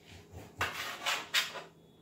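Kitchen knife cutting raw chicken into small pieces on a chopping board: a few sharp knocks and scrapes of the blade against the board, the loudest a little past the middle.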